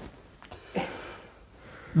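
Faint rustling of curtain fabric being handled and lifted up to the rail, with a soft click about half a second in.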